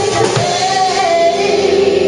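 Live soul band playing, with several singers at microphones singing together; a sung line bends up and down early on over sustained chords.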